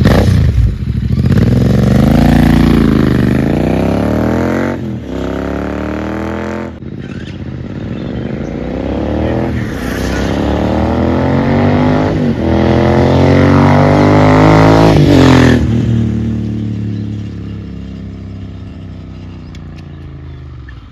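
Royal Enfield Continental GT 650's 648 cc parallel-twin engine accelerating hard up through the gears, its pitch climbing and then dropping at each gear change, about four shifts in all. Over the last few seconds it fades steadily as the bike rides away.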